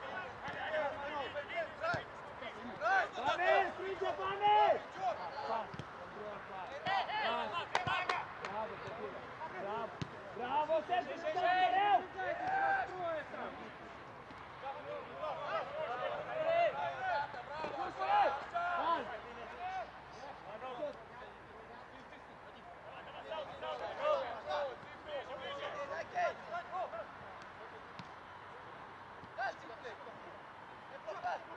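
Footballers shouting and calling to one another across an open pitch in short bursts, with a few sharp thuds of the ball being kicked.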